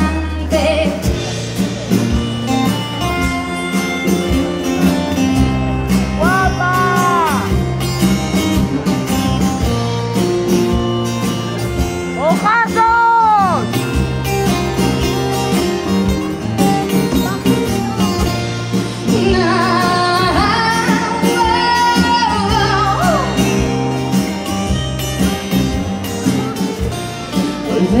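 Live pop-rock band playing an instrumental break: acoustic guitar, bass and drums keep a steady beat while a trumpet plays short arching phrases over them, about six seconds in, again near the middle, and a longer one about twenty seconds in.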